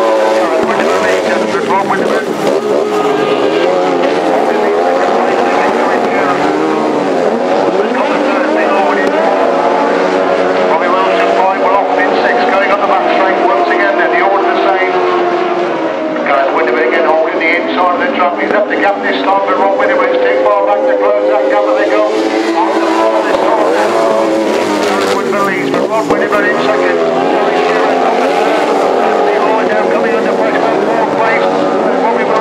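1000cc racing sidecar engines revving hard and changing pitch as the outfits race on the sand. Several engines rise and fall over one another throughout.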